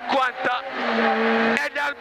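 Peugeot 106 rally car's engine pulling hard at high revs under load, heard inside the cabin with road and tyre noise; its steady note breaks off about one and a half seconds in, as on a lift or gear change. A few short words from the co-driver come at the start.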